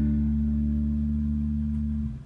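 Rickenbacker 4003 electric bass left ringing on the song's final sustained notes, the low tones fading slowly and the higher overtones dying away first. It cuts off just after the end.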